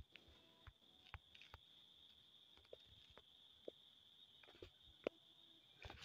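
Near silence: faint room tone with a thin, steady high whine and about a dozen faint, scattered ticks. The clearest ticks come a little past one second and about five seconds in.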